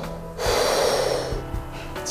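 A single breath drawn through a scuba regulator's second-stage mouthpiece, a hiss lasting about a second, over background music.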